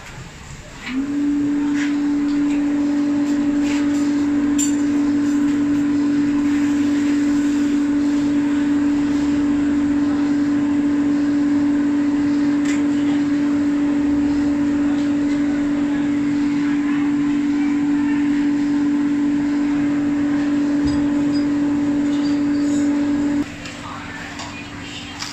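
Electric air blower running, blowing air into charcoal stoves to stoke the fire. A loud, steady motor hum that spins up about a second in and cuts off abruptly shortly before the end.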